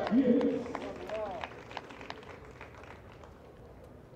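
Loud voices calling out in the first half-second, a short call about a second in, then scattered light clicks and taps as the sound dies down.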